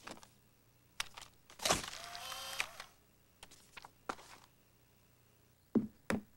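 Instant camera taking a picture: a shutter click about a second in, then about a second of motor whirring as the print is pushed out. Fainter clicks follow, and there is a sharp thud near the end.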